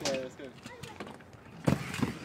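An inline skater dropping into a mini ramp: two sharp knocks near the end as the skates land on the ramp surface. A brief voice is heard at the start.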